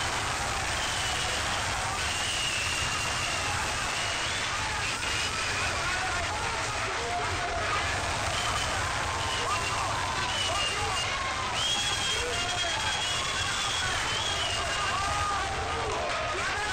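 Crowd in an arena shouting and calling out over a steady din, many voices overlapping, with some drawn-out high shouts.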